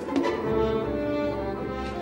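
Orchestral film score: brass and strings playing sustained chords, joined by low held notes about half a second in.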